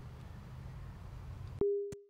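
A low steady background rumble, cut off suddenly near the end by a single electronic beep: one steady mid-pitched tone that fades away within about half a second.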